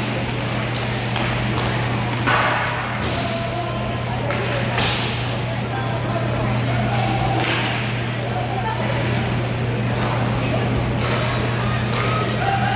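Roller hockey play echoing in a large indoor rink: sticks knocking the puck and floor, with sharper clacks a little after two seconds and near five seconds, and distant players' shouts, all over a steady low hum.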